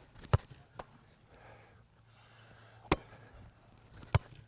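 A football being struck and caught in a goalkeeping drill: two sharp thuds about two and a half seconds apart, with a fainter one soon after the first.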